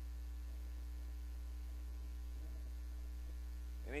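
Steady low electrical mains hum on the recording, unchanging throughout.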